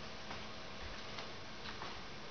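A few faint, irregular clicks of a puppy's claws on a hardwood floor as it shifts from sitting to lying down, over a steady low room hiss.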